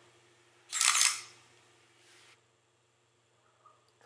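Sony A7R II's mechanical focal-plane shutter firing once at 1/60 s with the electronic front curtain off. The front curtain closes, the rear curtain runs and the shutter resets, heard as one short crisp clack about half a second long, a little under a second in.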